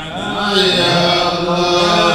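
Men's voices chanting Arabic devotional verses into microphones in long, drawn-out melodic lines, swelling louder about half a second in.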